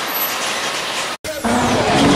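Steady outdoor background noise, then a sudden cut about a second in to a loud intro sound effect for a logo: a deep rumble with a high whoosh falling in pitch, over music.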